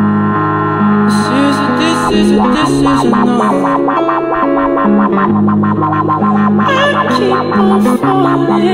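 Electric guitar music played through effects, with held tones over a low line stepping between notes, and a busier melodic line coming in about two seconds in.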